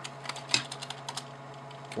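Computer keyboard keys typed in a quick run of about ten clicks over the first second or so, as a value is keyed into the software, over a low steady hum.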